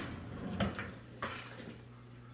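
Two brief, faint handling knocks over a low steady hum, from gloved hands working with gauze and supplies on the fingertip.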